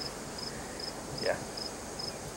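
An insect chirping in a steady rhythm, about two and a half short high-pitched chirps a second.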